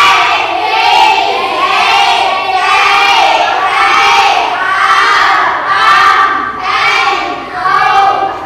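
A classroom of children chanting a lesson together in unison, loud and without a break.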